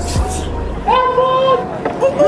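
A man's long, loud call held on one steady pitch for most of a second, starting about a second in. Bass-heavy music cuts off just at the start.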